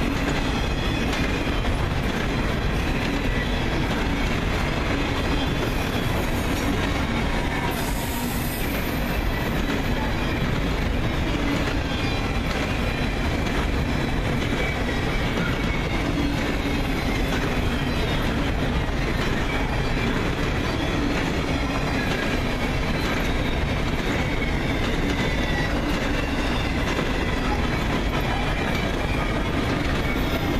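Freight train cars rolling past on the rails in a steady, continuous rumble with clickety-clack from the wheels. A faint high squeal from the wheels drifts in and out.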